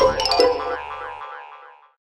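Closing jingle music for the end card: a last couple of bright notes, then the music rings out and fades away to nothing by the end.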